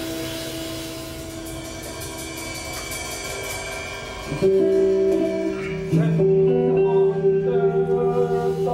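Live experimental music: sustained droning tones with plucked guitar. About four and a half seconds in, a louder held low note comes in suddenly, and from about six seconds wavering singing joins it.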